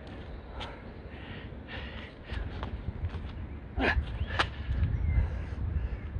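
A man breathing hard and laboured, worn out near the end of 100 burpees in a weight vest: repeated gasps and forceful exhales, with the two strongest close together about four seconds in.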